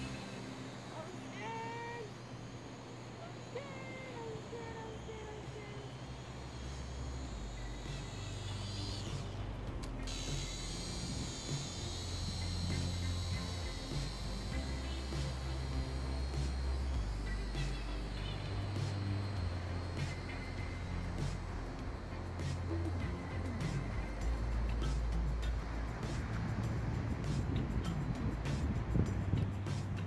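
Background music with a deep bass line that steps to a new note every second or two.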